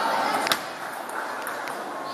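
Table tennis ball hits during a rally: one sharp click about half a second in.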